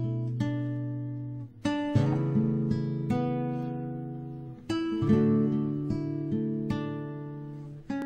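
Acoustic guitar playing slow chords, each struck and left to ring and fade for about three seconds before the next.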